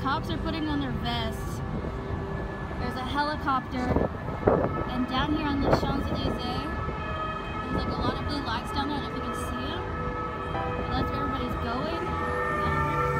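Emergency vehicle sirens sounding over street noise, with a person talking over them; the sirens come through more clearly near the end.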